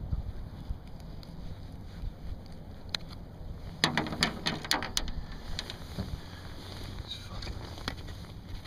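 Wind rumbling on the microphone in a small boat, with a quick run of clicks and knocks about four to five seconds in as a fish and tackle are handled.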